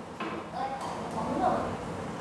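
Faint, soft voice sounds twice, about half a second and a second and a half in, over quiet room tone.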